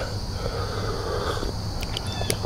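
A person sipping coffee from a mug: a soft drawn-in sip and breath lasting about a second and a half.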